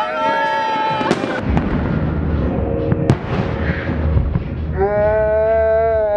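New Year's fireworks going off over a city: sharp cracks about a second in and again around three seconds, over a continuous rumble of many bursts. People let out long held shouts at the start and near the end.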